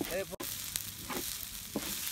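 Prawn fried rice sizzling in a large iron wok as a spatula stirs and turns it.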